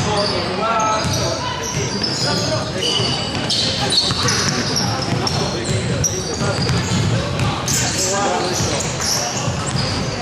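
Basketball bouncing on a wooden gym floor during play, with players' voices calling out, echoing in a large sports hall.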